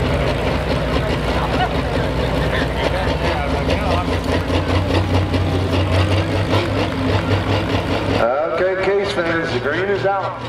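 Super stock pulling tractor's turbocharged diesel engine idling steadily at the line. About eight seconds in the engine noise thins out and a man's voice comes in over it.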